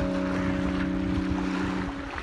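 Background music holding a sustained chord that cuts out near the end, over the wash of small waves breaking on a rocky shore.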